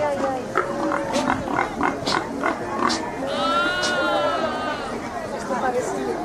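A farm animal's long drawn-out cry about halfway through, over a crowd's chatter.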